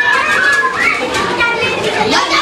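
A group of children talking and shouting over one another, with high-pitched squeals rising and falling.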